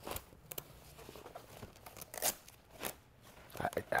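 A drywall sander's carry bag being handled as its pockets are opened and checked: faint rustling with a few short crinkly scrapes.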